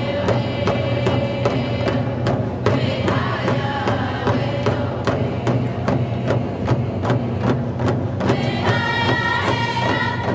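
Anishinaabe drum group singing: a steady drumbeat, about three strikes a second, under chanted group singing that grows stronger near the end.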